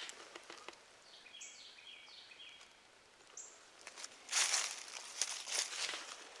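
Footsteps rustling through dry leaf litter and brush, starting about four seconds in, with a faint series of high bird-like notes before them.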